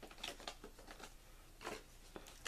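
Faint handling noises of paper and plastic packaging: a soft rustle about a quarter second in and another near the end, with a few light taps in between.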